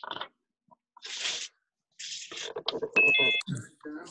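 Several short bursts of hiss, then a brief electronic beep of a few steady high tones lasting about half a second, under a voice saying "okay".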